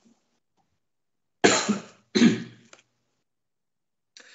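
Two short coughs from one person, about a second and a half into the silence and a little under a second apart, heard through a video-call microphone.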